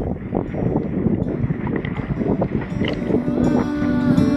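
Water sloshing and splashing around a camera held at the water's surface, a rough, irregular churn. Guitar music comes in near the end.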